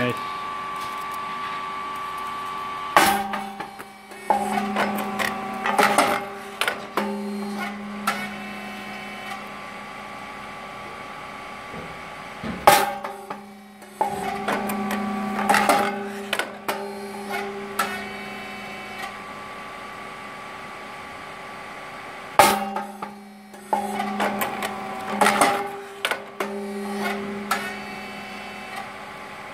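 Twin-mold puffed rice cake machine cycling: a loud, sharp pop about every ten seconds (three in all) as the rice mix puffs in the heated molds. Each pop is followed by a cluster of clicks and knocks from the mold mechanism, with a machine hum coming and going in between.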